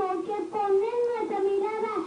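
A young boy's high voice singing, a continuous run of held, gliding notes with barely a break.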